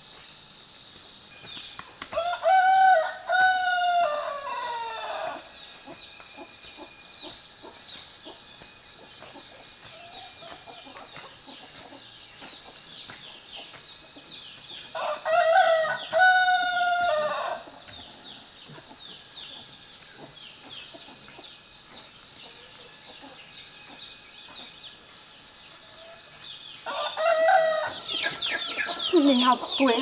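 A rooster crows three times, each crow two to three seconds long and about twelve seconds apart, over a steady high insect buzz. Near the end the last crow runs into other chickens calling.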